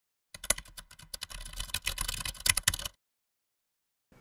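A rapid, irregular run of sharp clicks, like keys being typed, for about two and a half seconds, then cutting off to silence.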